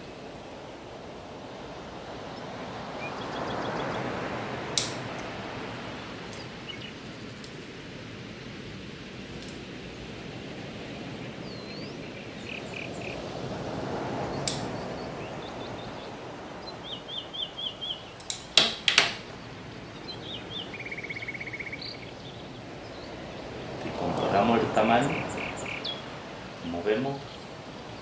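Bonsai scissors snipping off the new candles of a Japanese black pine: a sharp snip about five seconds in, another near fifteen seconds, and a quick run of snips around eighteen to nineteen seconds, as the summer candle-cutting (mekiri) that forces a second flush of buds. Birds chirp faintly in the background.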